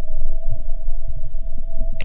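Background film score: a low throbbing drone with a steady held tone above it.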